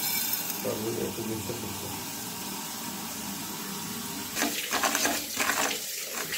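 A stream of water pouring into a nonstick pan, a steady splashing that runs for about four seconds. Near the end it gives way to a series of short, irregular scratchy sounds.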